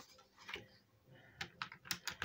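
Faint handling sounds of a ring binder's plastic pouches and paper sheets: a soft rustle about half a second in, then a few light sharp clicks in the second half.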